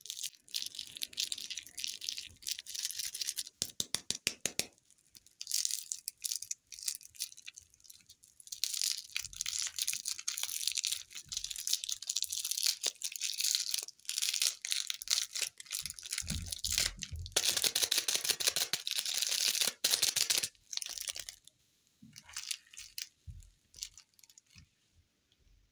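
Plastic lollipop wrapper crinkling and crackling in the fingers as it is twisted and peeled off the candy, in irregular spells, with the longest and loudest stretch in the second half.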